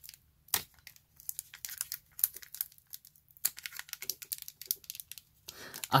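Foil booster-pack wrapper crinkling and crackling between the fingers in irregular bursts as it is worked at to tear it open. The sealed top edge resists the tear.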